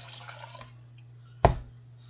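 Milk pouring from a glass measuring cup into a plastic mixing bowl, trailing off before the first second is out. About a second and a half in comes a single sharp knock.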